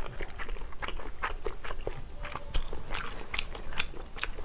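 Close-miked chewing of spicy tteokbokki: many short, irregular wet mouth clicks and smacks.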